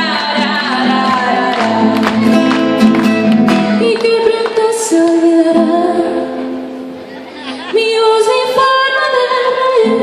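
A woman singing live while playing an acoustic guitar, with picked notes through the first few seconds and long held sung notes after that.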